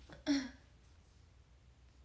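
A young woman clears her throat once, a single short burst about a quarter second in.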